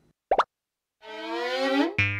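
Cartoon sound effects: a short rising plop about a third of a second in, then from halfway a buzzy, rising tone that swells for about a second.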